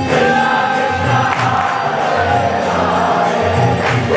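Kirtan: a crowd singing a devotional chant together over a steady drum beat, about two beats a second, and ringing hand cymbals.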